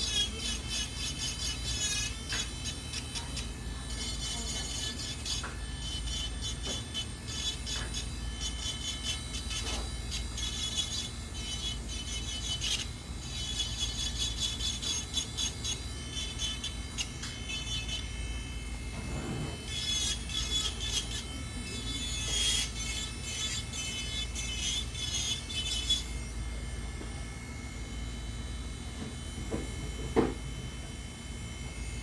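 Electric nail drill running steadily as its bit files an acrylic nail, with a rougher grinding sound that comes and goes as the bit touches the nail. The grinding stops a few seconds before the end.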